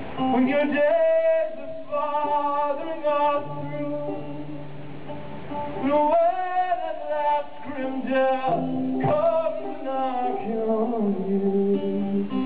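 Live male vocal singing long, high held notes with vibrato, accompanied by a picked banjo.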